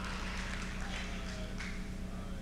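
A pause in a large hall: a steady low electrical hum, with faint voices about a second in.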